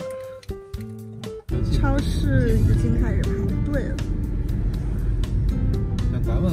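Light plucked-guitar background music; about a second and a half in, the loud low rumble of a car driving on the road cuts in, with a voice and music over it.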